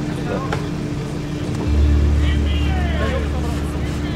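A vehicle engine running with a steady low rumble that grows louder a little under two seconds in, with people talking in the background.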